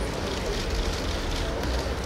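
Steady outdoor background noise with a low rumble and faint, indistinct voices.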